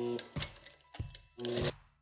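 Background music with plucked guitar notes struck about every half second.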